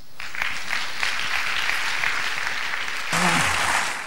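Audience applauding, dying down near the end, with a brief voice heard over it about three seconds in.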